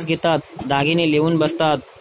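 Speech only: a man's voice reading a Marathi text aloud.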